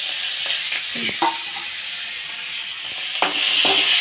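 Vegetables sizzling in hot oil in a wok while being stirred, with a steady frying hiss. There are two sharp knocks of a utensil against the pan, one about a second in and one near the end, and the sizzle grows louder after the second.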